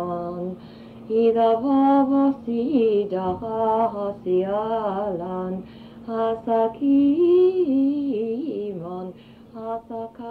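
A woman's voice singing wordless, chant-like held notes that slide up and down in pitch, broken by short pauses, over a steady low hum.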